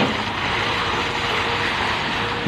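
Steady engine noise from machinery running on a concrete pour, with a faint steady hum through the middle of it.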